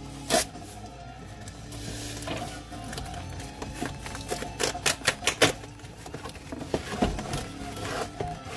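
A cardboard LP mailer box being cut open with a knife and handled, giving sharp clicks and scrapes, loudest in a quick run about halfway through, over death metal playing steadily in the background.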